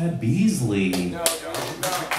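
A man's voice for about a second, then a run of sharp taps, a few a second, starting just past the middle.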